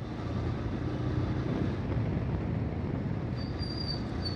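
Motorcycle riding at speed, its engine and the wind and road noise making a steady rumble. A brief high-pitched squeal sounds twice near the end.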